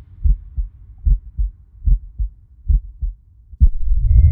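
Heartbeat sound effect: four slow lub-dub double thumps, about one beat every 0.8 seconds, then a single sharper thud near the end.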